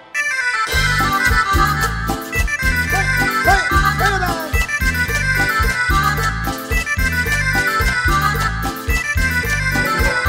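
Cumbia band music led by accordion over bass and a steady beat, coming in after a brief drop at the very start.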